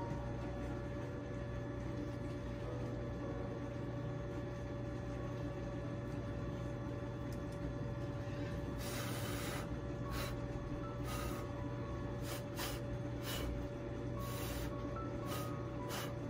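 Short puffs of breath blown by mouth onto wet acrylic pour paint, a run of airy hisses starting about halfway through, the first about a second long and the rest brief and irregular, over a steady low hum.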